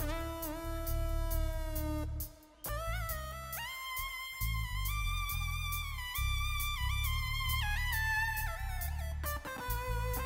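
Live keyboard solo: a sustained synthesizer lead with pitch bends and glides, played over bass and drums. The music drops out briefly a little after two seconds in.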